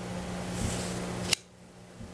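Room tone of a meeting room with a steady low electrical hum, broken by a single sharp click a little past halfway, after which the background noise drops away.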